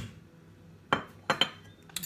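Kitchenware clinking against a glass mixing bowl: about four sharp clinks, each with a brief ring, the first about a second in and the last near the end.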